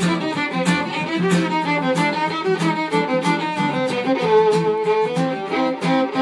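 Fiddle bowed in a fast run of notes, with one longer held note that bends slightly about four seconds in, over a pulsing low accompaniment.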